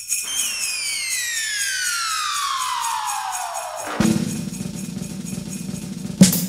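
Falling-whistle sound effect: a whistling tone glides steadily down in pitch for nearly four seconds, then breaks into a low crash and rumble, the cartoon sound of something dropping from the sky and hitting the ground.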